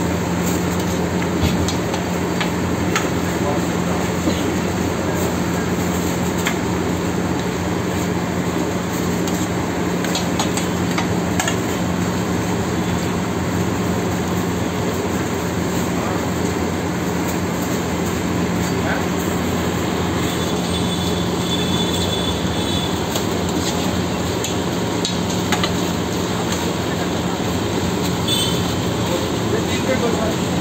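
Steady roar of frying on a large iron tawa, with a constant low hum underneath and a few light clicks of a metal spatula against the griddle.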